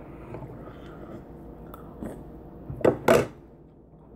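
Quiet chewing of Oreo cookies soaked in milk, with two short, sharp clicks a little under three seconds in.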